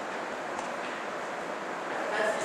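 Steady hiss of a classroom recording: room noise and microphone hiss, with no distinct events.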